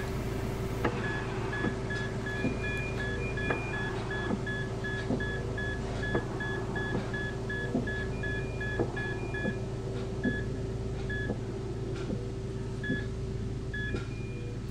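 Electronic heart-monitor beeps: a quick run of short, evenly spaced high beeps starting about a second in, thinning to a few scattered beeps near the end. A second, higher alarm-like tone sounds in two short stretches. Underneath is a steady hum and low rumble.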